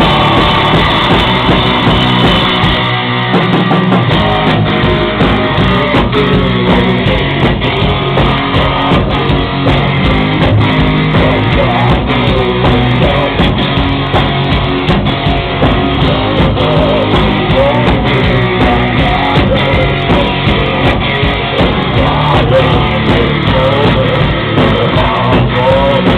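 Gothic rock band playing live at full volume: distorted electric guitars over a steady drum-kit beat, with the bass and kick briefly dropping out about three seconds in.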